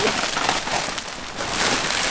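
Clear plastic bag and bubble wrap crinkling and rustling, handled as a racing bucket seat is pulled out of its packaging.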